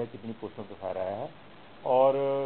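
A man speaking, with one drawn-out syllable about a second in and a short pause near the end.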